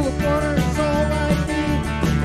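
Live country band playing an instrumental break: an electric guitar leads with bending notes over bass, drums and acoustic guitar.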